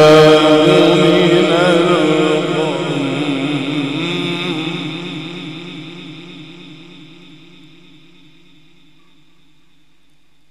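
An Egyptian male Quran reciter's voice in the melodic mujawwad style, drawing out one long, ornamented, wavering note that fades away over about eight seconds.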